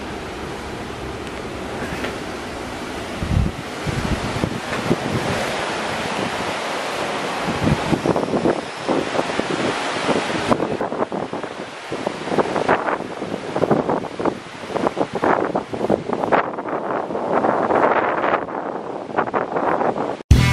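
Strong, gusty wind buffeting the microphone over the steady rush of surf breaking on a beach.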